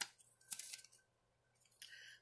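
Two short rustles of paper and a small bag being handled, one about half a second in and one near the end.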